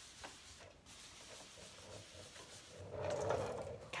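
Paintbrush scrubbing and blending chalk paint on a wooden dresser, a soft rubbing of bristles against the wood, louder near the end.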